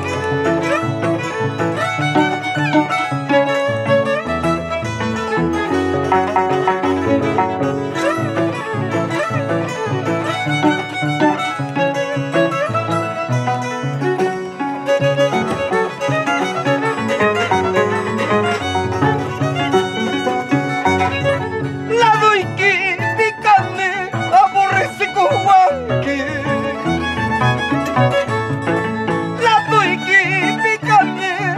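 Instrumental Andean folk music: a violin carrying the melody over the plucked bass and chords of an Andean harp. About two-thirds of the way through, the violin comes forward with a wide vibrato.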